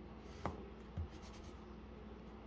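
Graphite pencil scratching on drawing paper in short sketching strokes, with two soft knocks about half a second and a second in.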